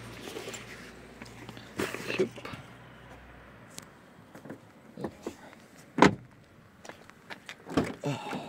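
A person climbing into a car, with rustling and small clunks, and the car door shutting with a sharp thump about six seconds in. A steady low hum stops abruptly a little before halfway.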